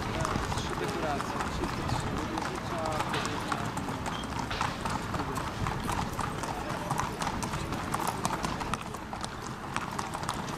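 Racehorses walking, their hooves clip-clopping at an unhurried pace, over a steady murmur of crowd voices.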